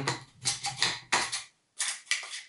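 Green plastic garlic grater worked by hand over a bowl: about five short rasping scrapes in quick succession as it grates a garlic clove. The tool is very stiff to work.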